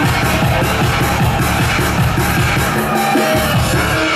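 Loud techno live set played over a club sound system: a fast, driving kick drum and bass under layered synth lines. Near the end the kick thins out and the bass drops away, leaving the higher synth tones in a breakdown.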